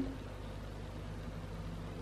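Steady low hum with a faint even hiss: the room's background noise between words.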